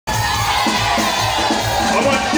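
Live amplified party music with a steady drum beat, over a noisy, cheering crowd.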